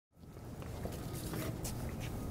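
Steady low outdoor background rumble with a few faint clicks, fading up from silence at the very start.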